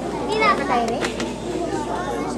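Children's voices talking and calling out over one another, with a few short clicks around the middle.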